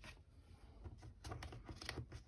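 Faint rustling and a few light ticks of cut paper pieces being handled on a cutting mat, mostly in the second half.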